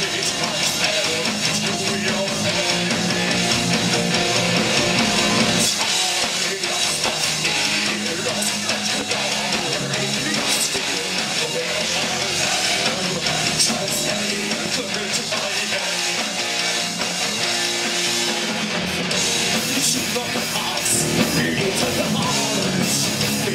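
Heavy metal band playing live: electric guitars and bass over a drum kit, loud and continuous.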